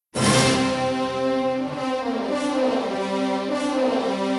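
Orchestral film music with prominent brass, starting abruptly a fraction of a second in out of silence and holding sustained chords that shift as it goes.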